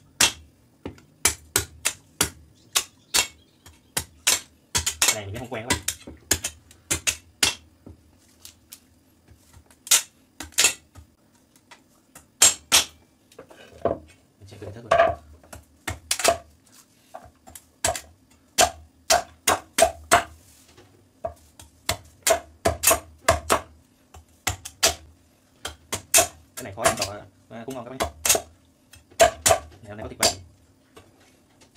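A long kitchen knife chopping repeatedly into a coconut's husk and shell, partly on a wooden chopping board. The chops are sharp and irregular, sometimes several a second, with short pauses between runs.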